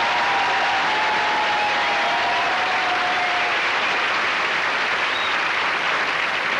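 Studio audience applauding steadily at the end of an a cappella vocal number.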